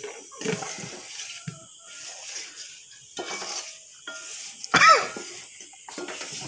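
Spatula stirring masala-coated gooseberries in a metal pan, with light, irregular scraping. About five seconds in comes one short, loud vocal sound that falls in pitch.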